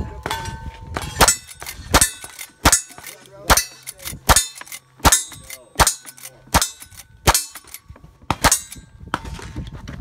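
A lever-action rifle fired about ten times in a quick, steady string, roughly one shot every three-quarters of a second, each followed by the short ring of a steel target being hit.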